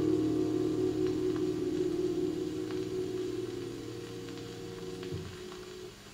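The final held piano chord of a jazz record dying away through large Western Electric horn loudspeakers, fading steadily and stopping about five seconds in. Faint ticks of record surface noise are heard under it.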